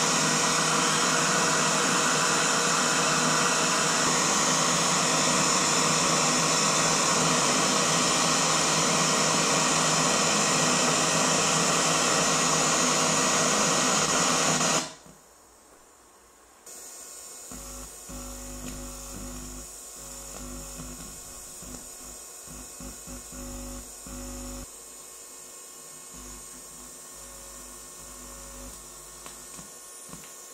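Loud, steady FM radio static from an amplifier's built-in FM receiver tuned to 100.0 MHz with no station on it. After about 15 seconds it cuts off suddenly as the 100 MHz transmitter's carrier takes over the frequency, and a much quieter low hum with faint buzzing is left.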